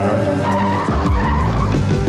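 A cartoon tire-squeal sound effect, a wavering screech starting about half a second in and lasting about a second, over the song's backing music.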